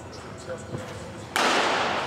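A fastball clocked near 98 mph smacks into a catcher's mitt about a second and a half in: a sudden sharp pop that rings on briefly in the hall.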